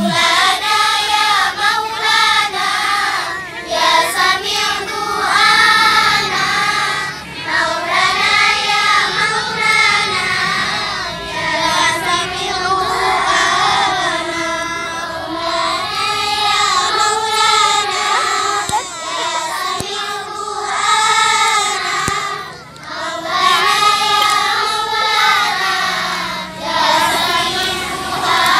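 A large group of children singing a song together in unison, phrase after phrase with brief breaks between.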